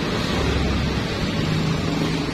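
Steady low rumble of a vehicle engine idling, over a hiss of outdoor background noise.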